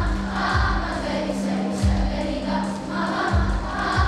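Children's choir singing together over a held low accompaniment note, with a low drum beating under the voices about once a second.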